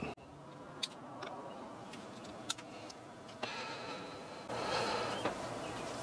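A few faint, sharp clicks and light handling noise as a camera on a tripod is switched on and handled, over a low steady background hum; the handling grows a little louder for the last couple of seconds.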